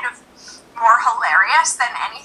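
Speech only: a woman talking over a video call, played through the computer's speakers, with a brief pause early on before she talks again.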